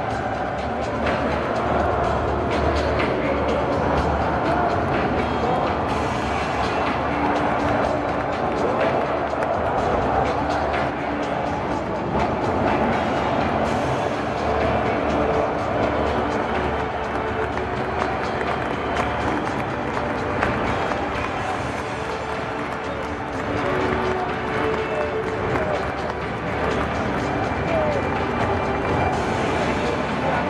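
Large football stadium crowd, loud and steady, with music playing through it and held sung or played notes.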